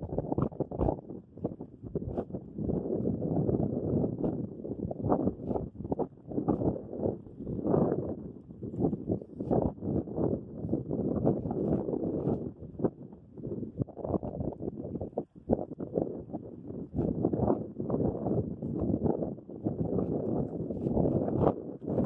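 Wind buffeting the microphone in uneven gusts, a rumbling rush with scattered small knocks and clicks.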